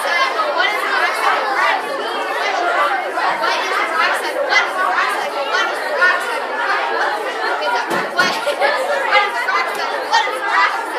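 A classroom of sixth-grade students all talking at once, many children's voices overlapping in a steady babble as they repeat the lesson question to each other.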